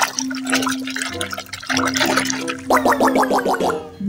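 Water sloshing and splashing as a hand scrubs a plastic toy animal in a tub of soapy water, over steady held tones from background music. Near the end comes a quick run of short pitched notes.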